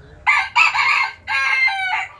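Rooster crowing once, loudly: a two-part crow with a short break a little past the middle, the second part falling slightly in pitch.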